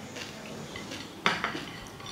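Fingers scraping and picking food off plates, with small clicks and one sharper clink against a plate about a second and a quarter in.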